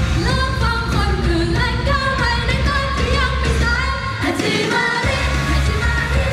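Idol pop song played live and loud, a woman singing the melody into a microphone over a full band backing track. The bass drops out for about a second near the end, then comes back in.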